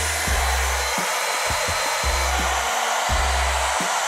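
Handheld hair dryer blowing steadily on high, heating a freshly applied vinyl decal on a football helmet shell so it softens and sticks down.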